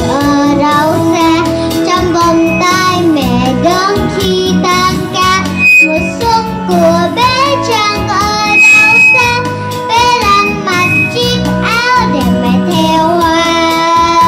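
A young girl singing a Vietnamese children's spring song into a microphone, over instrumental accompaniment with a steady bass line.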